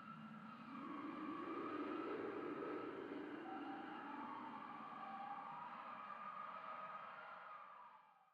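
A soft sustained drone of several tones that waver slowly in pitch over a low hum, swelling about a second in and fading out near the end.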